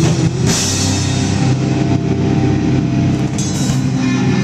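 A drum kit played hard with crashing cymbals in a loud heavy rock band mix, the sustained low notes of the band under the drums throughout.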